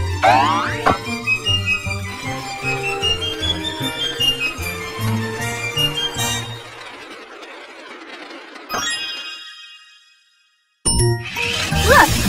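Cheerful children's background music with cartoon sound effects: a springy boing just after the start, as a coiled spring sends a metal ball off, and light tinkling chimes. The music fades and drops to a brief silence near the end, then starts again.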